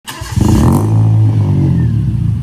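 Engine sound effect for an animated intro logo: a loud, deep vehicle engine note that comes in within the first half-second and runs steadily, dropping slightly in pitch, with a hiss over its start.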